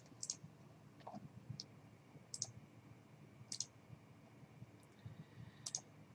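Faint computer mouse clicks: about five short, sharp ticks spread unevenly over a few seconds, over quiet room tone.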